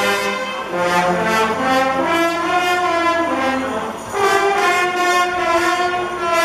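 Guggenmusik brass band playing loud, held brass chords with sousaphones and tubas underneath, backed by percussion beats. The sound thins briefly about four seconds in, then comes back louder on the next chord.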